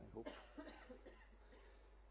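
Near silence: hall room tone, with a few faint, short human vocal sounds in the first second.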